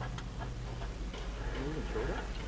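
Ratchet wrench clicking in faint, irregular ticks as a socket turns a nut on the frame bracket bolts, over a low steady hum.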